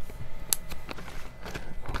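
Clear plastic parts bag being handled and crinkled, with a few light clicks and taps, the sharpest about half a second in.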